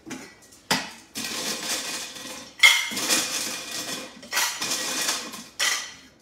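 Kitchenware being handled: dishes and metal utensils clattering in several bursts of about a second each, after a single knock.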